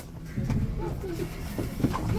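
Inside a Rennes metro line B train (Siemens Cityval): a steady low hum from the train as it prepares to leave the station and begins to pull away near the end.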